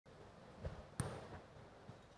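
Two faint knocks over low room tone: a soft thump about two-thirds of a second in, then a sharper knock about a second in.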